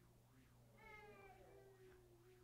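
Near silence: room tone, with a faint, drawn-out pitched sound starting about half a second in.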